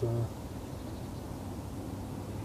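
A brief spoken word, then steady low background noise with no distinct sound in it.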